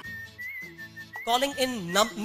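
Film background score: a thin, steady high whistle-like tone with a slight waver, over faint held low notes. A voice comes in about a second and a half in.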